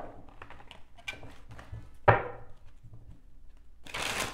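Tarot cards being handled on a table: light clicks and rustles of cards, with one sharp knock about two seconds in, as a card or the deck is put down.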